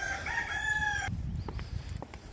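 A rooster crowing once, a single level call about a second long that stops abruptly.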